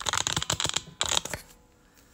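Microphone handling noise: scratchy rustling in two bursts, the second starting about a second in, then quiet room tone.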